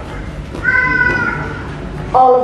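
A woman's voice speaking over a microphone, with one drawn-out, high-pitched syllable about a second long in the middle.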